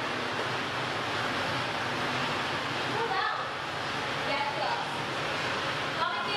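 A steady rush of background noise, with faint voices talking from about halfway through.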